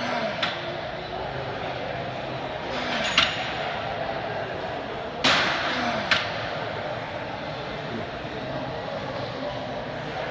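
Steady background noise of a busy gym with a few sharp clacks of metal equipment in the first six seconds and faint distant voices.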